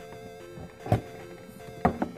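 Metal collector's tin lid being worked off by hand: two sharp clicks about a second apart, the second as the lid comes free, over faint background music.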